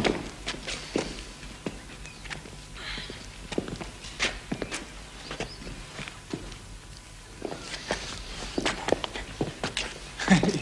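Footsteps of several people, irregular steps and shuffles, getting busier near the end.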